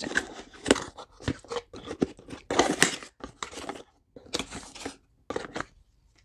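Cardboard gift box and its packaging being torn and pulled open by hand: irregular bursts of tearing and crinkling with short pauses between them.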